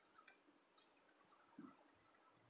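Faint scratching of a soft 10B graphite pencil shading on paper.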